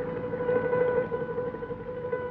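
A single held note of the film's background score, steady in pitch, fading away at the end.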